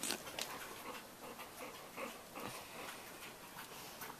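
Dogs sniffing and snuffling close to the microphone: short, irregular breathy sounds and faint clicks as one dog noses at the other.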